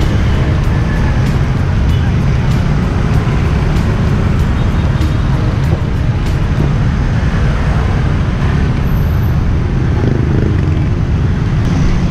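Steady street traffic, mostly motorbikes and cars, with a heavy low rumble on the camera microphone.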